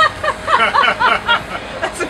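People laughing: a quick run of short, repeated ha sounds lasting about a second and a half.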